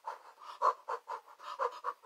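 A woman's quick, breathy puffs of breath close to the microphone, several a second, with no voice behind them.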